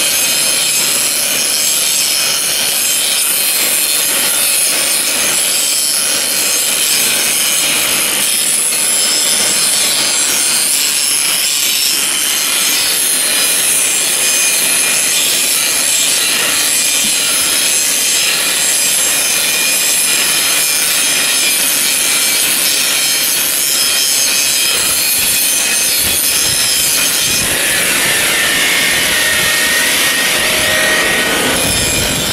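Angle grinder with a wire brush running steadily against a metal floor drain, a scouring, rasping noise over the motor's high whine, cleaning rust and old material off the drain's rim and bowl. The whine's pitch shifts near the end.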